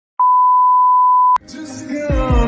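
A single steady high-pitched electronic beep lasting just over a second, cut off by a click, after which music fades in.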